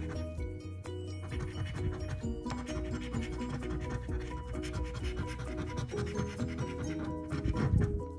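Quick repeated scraping strokes as the silver coating is scratched off a paper lottery scratch-off ticket, under background music with a run of short, evenly paced notes.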